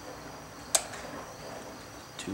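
A single sharp click about three-quarters of a second in as the load switch on a Cen-Tech 6-volt/12-volt handheld battery load tester is pressed, putting the load on a 12-volt battery at the start of a load test. Underneath is a faint, steady high-pitched background.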